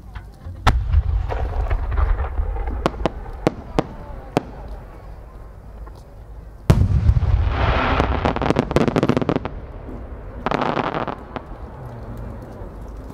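A No. 8 senrin-dama (thousand-ring) aerial firework shell. A deep boom comes about a second in, then scattered sharp cracks. A louder boom comes past halfway, followed by a dense crackle as its many small flower bursts go off, and a shorter crackle near the end.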